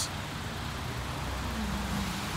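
Low, steady hum of a 2017 Buick Encore's 1.4-litre turbocharged four-cylinder engine idling.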